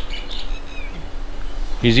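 Small birds chirping in the background: a few short, high calls and little rising and falling notes in the first second, over a faint steady hum.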